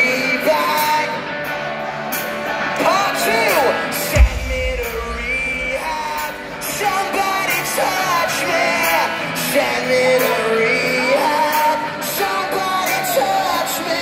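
Live rock band playing with singing, heard from the audience in a large arena, with a heavy low hit about four seconds in.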